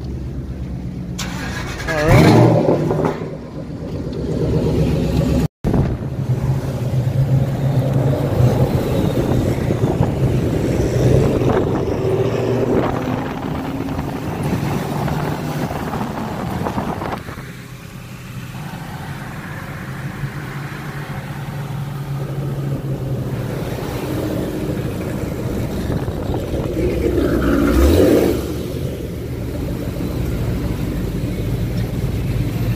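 Car engine running steadily, with a loud rev about two seconds in and a rising rev near the end. The sound cuts out briefly about five seconds in.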